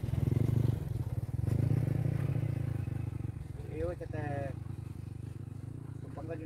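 Small motorcycle engine running close by, with a rapid, even low pulse. It is loudest in the first two seconds and slowly fades. A brief voice cuts in about four seconds in.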